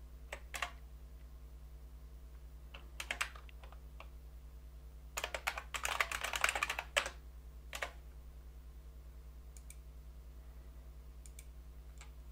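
Computer keyboard typing in short bursts of keystrokes while entering editor commands and a text search: a few single keys near the start, a quick flurry of keystrokes around the middle, and scattered taps later. A steady low hum runs underneath.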